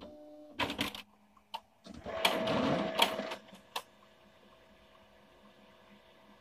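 HP LaserJet MFP M175nw colour laser printer running its initialization cycle after its toner cartridges have been reinstalled. Clicks and a short motor whir come first, then a louder whirring run with clicks about two seconds in, which settles to a faint steady hum.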